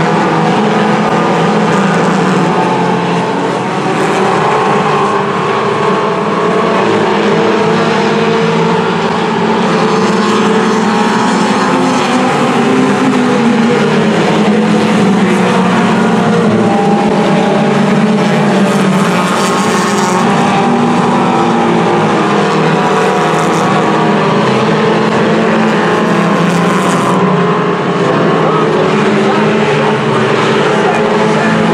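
A pack of front-wheel-drive compact race cars racing on a dirt oval: many engines running at once in a steady, loud blend of overlapping engine notes that waver in pitch as the cars pass.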